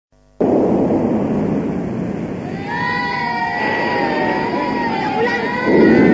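Opening of a Minang pop song recording: a steady rushing noise starts abruptly. About halfway through, a sustained melodic instrument line with slow glides enters over it, and the sound swells louder near the end.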